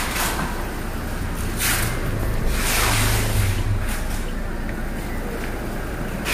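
Steady low hum that swells for a second or so in the middle, with a few brief soft hissing rustles over it.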